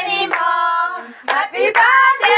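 A group of people singing a birthday song and clapping along in time, with a held sung note in the middle and the singing picking up again near the end.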